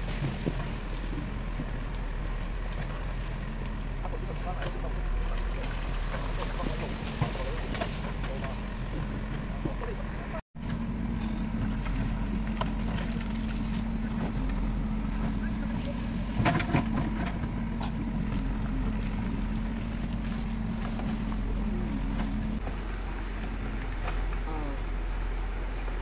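JCB 3DX backhoe loader's diesel engine running steadily under load as the backhoe bucket digs and drags through rock and earth, with scattered knocks of stones. The sound cuts out briefly about ten seconds in, and the engine note is stronger afterwards.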